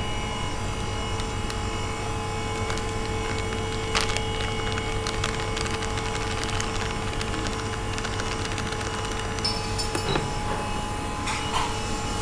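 Steady low hum of kitchen appliances with a constant tone, under scattered light clicks and rustles as plastic packets of seasoning powder and flour are handled and emptied into a stainless steel bowl.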